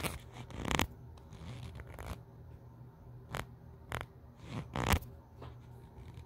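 Handling noise from a hand-held camera being moved about: a series of about six short rubs and scrapes against the microphone, the loudest about five seconds in.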